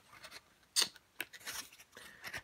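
Paper rustling as a softcover rule book is opened and its pages are handled: a few short, dry rustles, the loudest a little under a second in.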